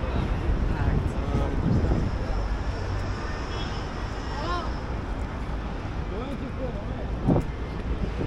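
Outdoor pedestrian ambience: passers-by talking near the camera over a steady low rumble of wind on the microphone, with one sharp knock a little over seven seconds in.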